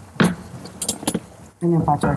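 A few sharp metallic clinks of kitchen utensils against pots: one about a fifth of a second in, then a quick cluster around a second in. A voice starts speaking near the end.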